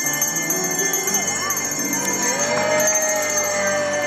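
A group of small hand bells shaken and ringing continuously along with a song. A long note is held from about halfway through.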